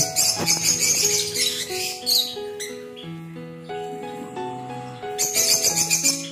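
Background music with held notes and a fast, high jingling rhythm that drops out in the middle and returns near the end, with small birds chirping.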